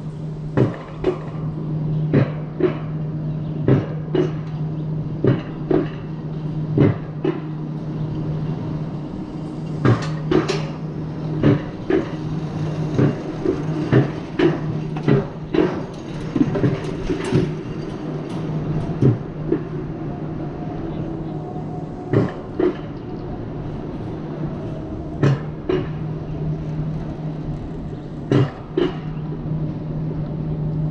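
Alpine coaster sled running along its steel twin-rail track: sharp clicks and knocks about once or twice a second, irregularly spaced, over a steady low hum.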